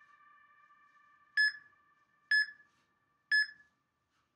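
Tabata interval timer counting down the last seconds of a work interval with three short electronic beeps about a second apart.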